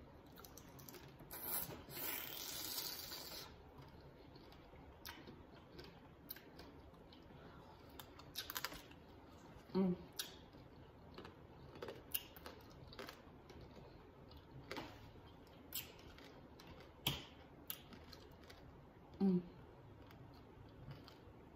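Hard sugar shells of candied fruit (tanghulu) cracking and crunching between the teeth during chewing: scattered sharp clicks and cracks, with a longer crunching stretch about a second or two in. A short hum of approval, 'mm', near the end.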